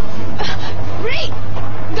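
Two short rising vocal sounds, about half a second apart, over a steady low hum.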